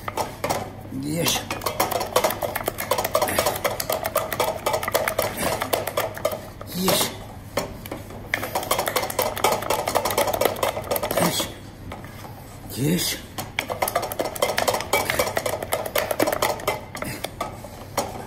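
Wooden spatula beating egg into choux pastry dough in a stainless steel saucepan: rapid, continuous scraping and slapping against the pan's sides and bottom, with a few short breaks. The paste is being worked until it is smooth and sticky.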